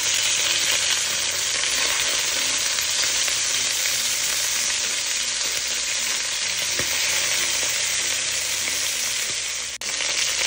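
Chicken pieces searing in hot oil in an enamelled cast-iron pot, a steady sizzle as they are turned with tongs. The sizzle dips briefly just before the end.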